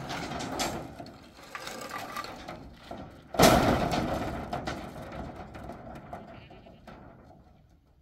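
Long steel rebar rods dragged and scraping across a metal sheet, then let fall with a sudden loud clatter about three and a half seconds in that rattles and rings away over several seconds.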